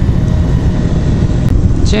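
Steady low rumble of wind on a helmet-mounted microphone while riding a Honda CBR125R motorcycle, with its small single-cylinder engine running beneath it. A man's voice starts near the end.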